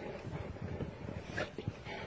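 Saint Bernard dogs in deep snow, one giving a short yelp about one and a half seconds in, over a continuous low rustling.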